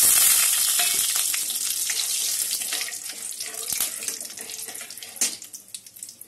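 Whole spices (green and black cardamom, cinnamon, cloves, star anise) sizzling in hot oil in a steel kadai just after being tipped in, stirred with a metal spatula. The sizzle is loudest at the start and dies down over the next few seconds, with scattered crackles and a sharper pop near the end.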